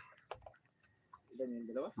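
Crickets chirping steadily in the background, with a person's voice speaking briefly past the middle.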